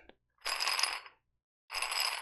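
Metal dumbbell handle worked close to the microphone: two short metallic rasps, the second near the end, each with a thin high ringing, typical of a spin-lock collar turning on the threaded bar.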